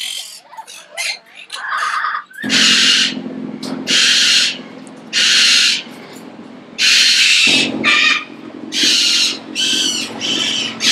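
Cockatoos screeching: a run of about seven loud, harsh screeches, each well under a second long, starting a couple of seconds in, over a steady low hum.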